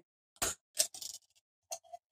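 The ring pull-tab on an old J.R. Ewing's Private Stock beer can being pried up and torn off: a few sharp clicks and snaps of the metal tab.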